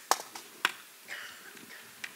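Two sharp clicks about half a second apart as the magnetic Type Cover keyboard is detached from a Microsoft Surface Pro 3 tablet.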